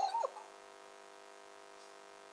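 Siberian Husky whining in a few short cries that bend up and down in pitch, ending about a quarter second in, followed by only a faint steady hum.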